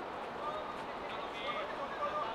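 Footballers' voices calling out faintly across an outdoor pitch during play, with one louder call about one and a half seconds in, over steady background noise.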